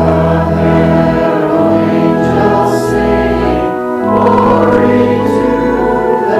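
Organ playing sustained chords over deep bass notes, with voices singing along: a hymn being sung with organ accompaniment.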